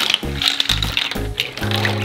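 Ice cubes clinking and rattling against each other and the stainless steel tray as they are tipped into a cold cucumber soup and stirred with a ladle, over louder background music.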